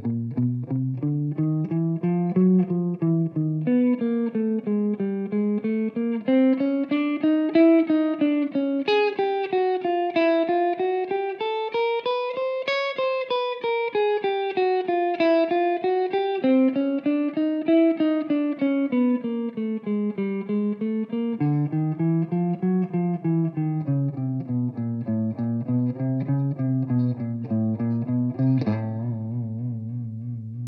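Electric guitar playing a chromatic exercise in even sixteenth notes, picked single notes walking up string by string to a peak about halfway through, then back down. It ends on a held low note near the end.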